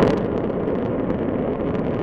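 Space shuttle solid rocket motor firing in a horizontal static ground test: a loud, steady roar, loudest at the very start and then holding level.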